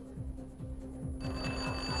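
Quiet game-show background music, then about a second in a contestant's answer bell starts a steady electronic ring, signalling that a player has rung in to answer.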